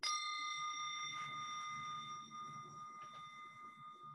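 A metal meditation bell struck once with a wooden striker, ringing on with several clear steady tones that fade slowly.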